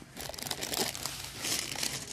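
Crinkling and rustling close to the microphone, in irregular bursts, loudest about a second and a half in.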